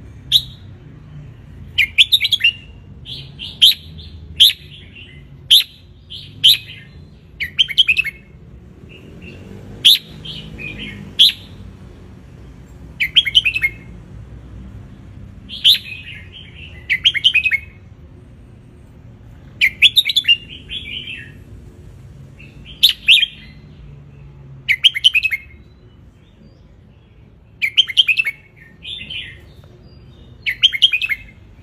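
Red-whiskered bulbul singing: short, loud phrases of a few quick chirpy notes, one phrase every second or two, with brief pauses between them.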